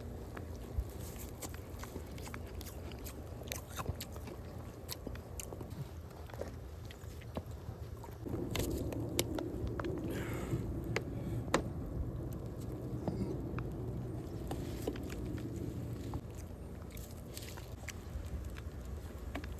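Crunching and chewing of icy, juice-soaked snow from a snow cone, heard as scattered short crunches over a low steady rumble. A louder low hum joins about eight seconds in and fades out about eight seconds later.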